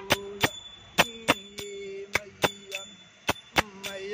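A man singing a devotional bhajan, holding long notes, over small metal hand cymbals struck in a steady repeating pattern of three beats, about three strikes a second. The voice drops away about halfway through while the cymbals keep going.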